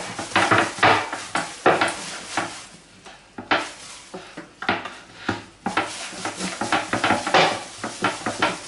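Gloved hand kneading a grated hard-boiled egg and cheese mass in a glass bowl: irregular squishing and plastic-glove crinkling, with the hand and mixture brushing the glass. There is a brief lull in the middle.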